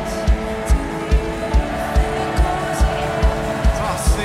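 Live band music at a worship concert, with a steady kick-drum beat a little over twice a second under sustained held chords.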